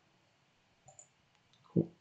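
Quiet room with a single faint computer-mouse click about halfway through, as the browser tab is switched.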